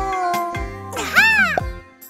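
Background music for a children's cartoon. About a second in comes a short, loud cry from an animated character that rises and then falls in pitch.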